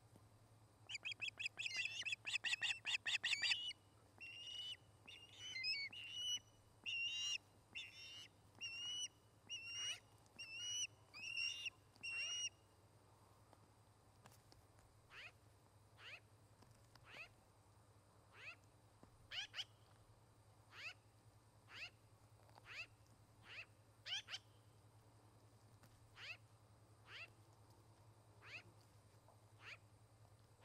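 Ospreys calling: a rapid chattering burst, then a run of repeated high chirping calls about one a second, then quieter short downslurred whistles at about the same pace.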